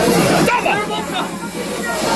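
Indistinct voices of people talking in a bar. About half a second in, the background noise and music drop away abruptly, leaving scattered voice fragments.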